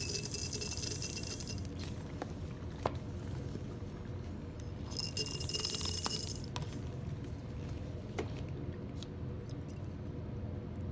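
Acetone squirted from a squeeze wash bottle into a small glass vial in two hissing spurts, each about a second and a half, one at the start and one about five seconds in. A few light glass clicks between them.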